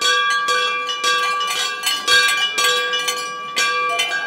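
Hanging brass temple bells being rung over and over, roughly two strikes a second, their tones ringing on and overlapping.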